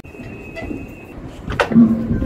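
Outdoor harbour ambience: a low, even background noise, with a faint steady high-pitched tone for about the first second and a short, louder noise near the end.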